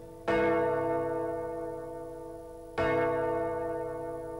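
A large church bell tolling slowly: two strikes about two and a half seconds apart, each ringing on and slowly fading.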